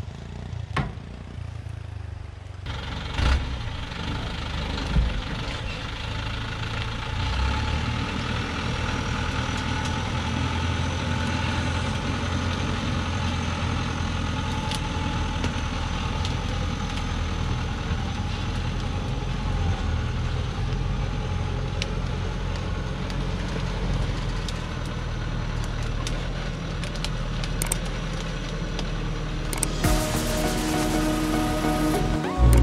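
Diesel engine of a DongFeng truck loaded with acacia logs, running steadily as the truck drives along a rough dirt track. It grows louder about two and a half seconds in, with a couple of knocks soon after.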